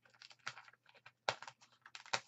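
A sheet of dried Mod Podge and deli paper crackling as it is peeled up off a non-stick craft mat: a scatter of small dry clicks, the sharpest about a second and a quarter in.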